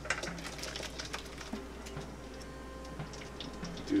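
Cooked rhubarb and strawberry filling poured from a frying pan into a metal strainer, with many light clicks and scrapes of pan and utensil on metal as the juice drains off.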